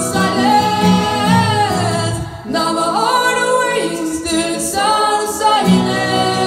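Female vocalist singing long, held notes that slide in pitch, through a microphone in a hall, with guitar accompaniment. The guitar drops out for about three seconds in the middle, leaving the voice alone, then comes back near the end.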